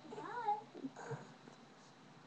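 A cat meowing: one short meow that rises and falls in pitch, then a fainter, shorter sound about a second later.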